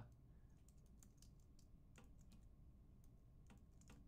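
Faint computer keyboard typing: a short run of irregularly spaced key clicks.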